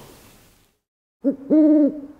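Owl hooting, a recorded sound effect: a short hoot and then a longer one at a steady pitch, starting just over a second in.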